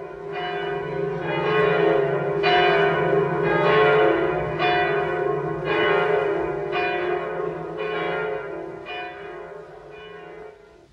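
Bells tolling about once a second over a held low drone, in the manner of church bells. The peal swells up and then fades toward the end.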